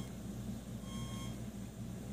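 A steady low electrical hum with a faint, constant high-pitched whine from a powered-up buck converter and 2.4 GHz amplifier rig drawing nearly two amps.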